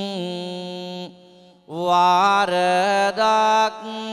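Buddhist monk singing a Sinhala kavi bana (verse sermon) into a microphone. He holds one long note, breaks off for a breath just past a second in, then starts a new phrase whose pitch bends up and down.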